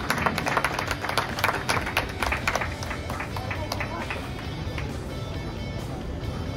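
Spectators clapping and calling out just after a goal, sharp irregular claps over voices for the first few seconds, then fading as steady background music takes over.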